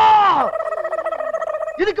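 A man's long, loud shouted cry, held on one pitch and then falling away about half a second in, followed by a steady held tone until a laugh near the end.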